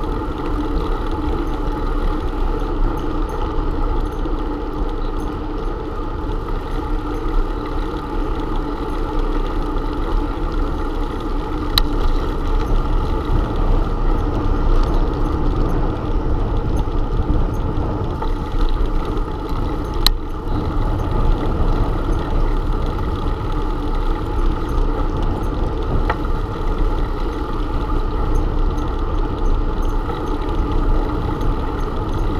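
Steady wind and road rumble picked up by a camera riding on a moving bicycle along a paved road. There is a sharp click about twelve seconds in and another about twenty seconds in.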